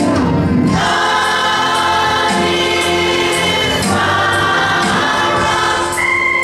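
Gospel choir singing, holding two long sustained chords, the second starting about two-thirds of the way in.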